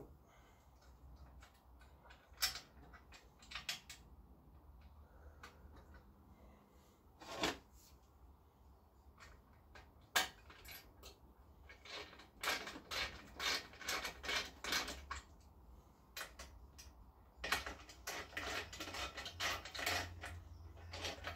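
Hand tool working on the metal bolts of a moped frame: scattered sharp clicks and knocks, then two runs of rapid clicking in the second half.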